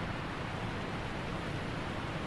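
Water running steadily from a bathroom faucet into the sink, a constant hiss.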